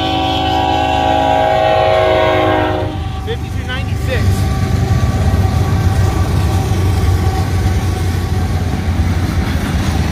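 Freight train's locomotive air horn sounding a chord of several tones, held until about three seconds in. Then the diesel locomotives rumble steadily past over the crossing, with a couple of brief squeals about four seconds in.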